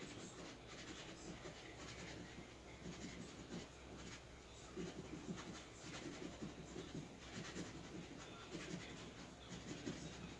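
A scratch-off lottery ticket being scratched: a steady run of quick, irregular scraping strokes that grow a little louder about halfway through.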